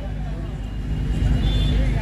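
Low, steady rumble of road traffic, swelling slightly toward the end, under a faint steady hum.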